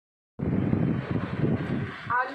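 A loud low rumbling noise that starts abruptly a moment in and stops about two seconds in.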